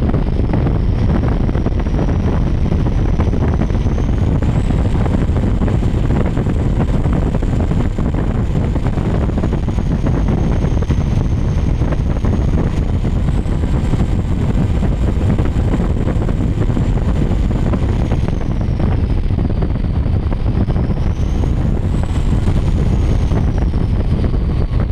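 Twin Mercury Racing 1350 supercharged V8s of a 48-foot MTI offshore catamaran running at speed, with wind buffeting the microphone and water rushing. A thin high whine rises and falls in pitch several times over the run.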